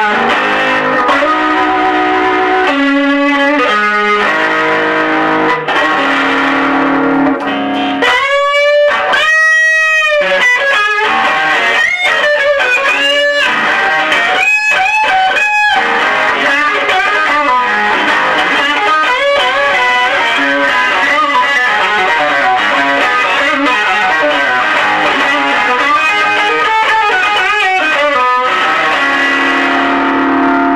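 Electric guitar driven through a Maxon ST9 Super Tube Screamer overdrive into a Suhr Badger 18 W tube head and a 1x15 cabinet with a reconed Weber Blue Dog speaker, playing blues-rock lead lines in an overdriven tone. About eight seconds in there is a long bent note with wide vibrato.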